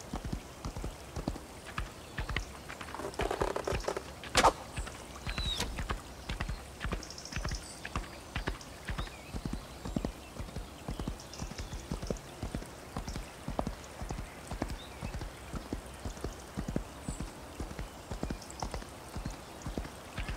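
A horse's hooves clip-clop steadily on the ground as it is ridden. A single sharp crack, the loudest sound, comes about four and a half seconds in.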